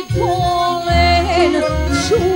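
A woman singing a Macedonian folk song with a wavering, ornamented melody full of quick turns, over a band accompaniment with a steady bass.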